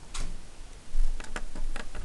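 A few short, sharp clicks and taps, with a dull thump about a second in.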